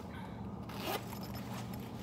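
Zipper of a fabric mini backpack being pulled open, with one quick, loud zip stroke about a second in and the rustle of the bag's fabric.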